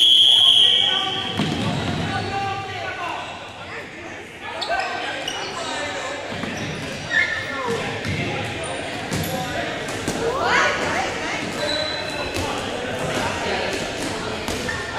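Dodgeball game on a hardwood gym court: a short high-pitched start signal at the very beginning, then rubber dodgeballs bouncing and smacking on the floor among players' shouts, echoing in the hall.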